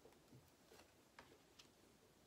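Near silence with three faint clicks of tarot cards being laid down on a table, the clearest about a second in.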